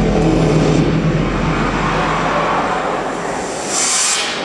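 A dance track ending on a low, sustained rumble that fades out, while audience applause and cheering rise in its place, with a sharp burst of cheering near the end.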